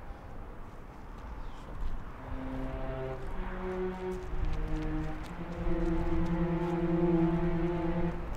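Film score: a slow line of low, held notes that starts about two seconds in and moves from pitch to pitch, ending on one long sustained note. Under it runs a steady low outdoor rumble.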